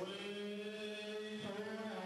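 A man's voice chanting in long held notes, the pitch shifting about one and a half seconds in.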